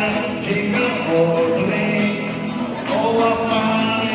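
Nylon-string classical guitar played with a man singing along into a microphone.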